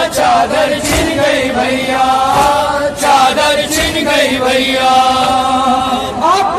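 A noha, the Shia mourning lament in Urdu, chanted with long held, wavering notes.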